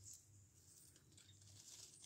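Near silence, with faint rustling of dry leaves and soil as a hand moves among them.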